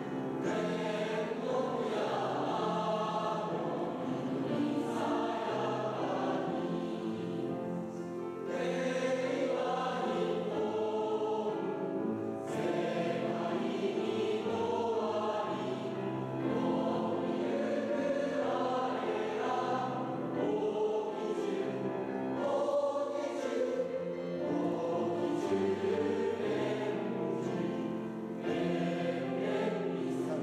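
A choir singing, phrase after phrase with brief pauses between them.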